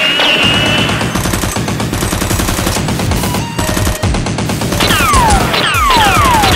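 Rapid automatic gunfire sound effects, a dense run of shots with a short break past the middle, dubbed over Nerf blasters, with music underneath. Near the end come several quick falling zap tones.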